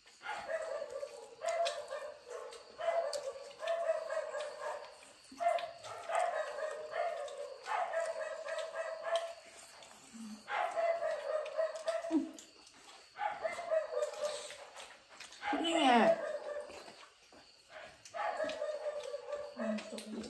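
A dog off camera gives a dozen or so drawn-out whining cries, each about a second long and spaced closely, with one sharp falling yelp about three-quarters of the way through.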